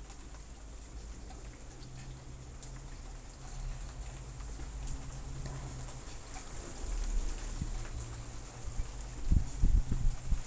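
Light rain falling, with scattered drops ticking over a low steady hum and rumble. A few low thumps come near the end.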